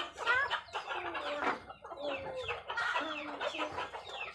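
Poultry clucking: many short, overlapping calls that slide down in pitch, following one another without a break.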